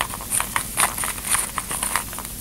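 A quick, irregular run of clicks and knocks, with no voice over it.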